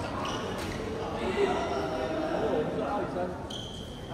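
Badminton rally in a sports hall: sharp racket hits and footfalls on the court over people talking, with a short high squeak near the end.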